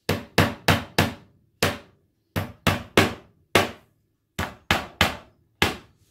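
Small cross-pein hammer tapping a steel tapered punch to drive shelf-support pegs into drilled holes in a wooden bookcase side panel. There are about thirteen sharp taps in short runs of two to four, with brief pauses between runs.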